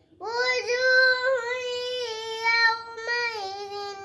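A young girl reciting the Qur'an in a melodic, chanted style. After a brief pause she draws out one long, held phrase at a steady pitch, which dips slightly about three seconds in and carries on.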